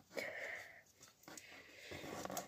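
Faint breathing: two drawn-out breaths, the first about a quarter second in and the second starting just past halfway.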